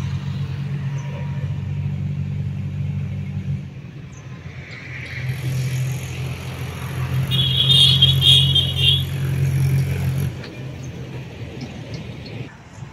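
Steady low hum of an engine or motor running, which weakens about four seconds in and comes back, with a brief higher chattering sound around the eighth second.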